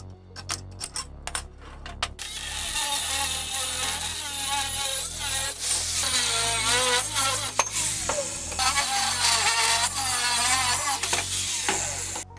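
A few sharp metallic clicks, then about two seconds in an angle grinder with a cutting disc starts slicing through a steel strip: a loud, continuous hiss with a whine that wavers in pitch, cutting off suddenly at the end.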